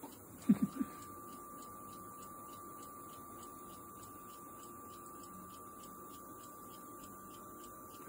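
A brief laugh about half a second in, then a quiet room with a faint steady high-pitched tone.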